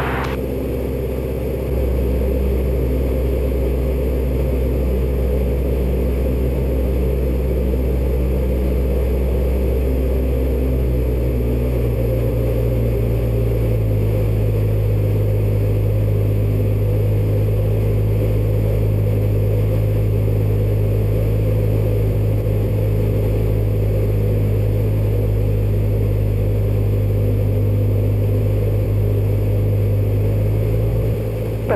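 Steady drone of a Robin light aircraft's piston engine and propeller in cruise, heard inside the cockpit. Its low note steps up in pitch about twelve to fourteen seconds in.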